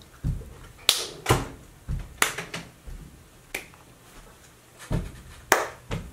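Finger snapping: about seven sharp snaps at uneven spacing, with soft low thuds between them.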